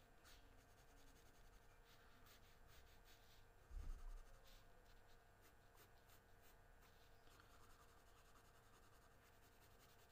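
Faint pencil strokes scratching on paper as lines are darkened, a run of short strokes through the middle. A soft low thump comes about four seconds in.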